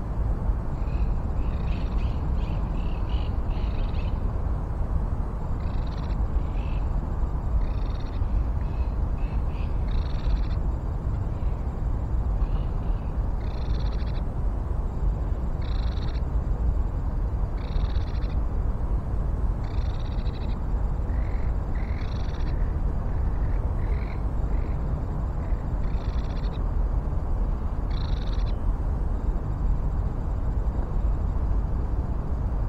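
A small animal calling: short high calls, a quick run of them in the first few seconds, then one about every two seconds, over a steady low rumble.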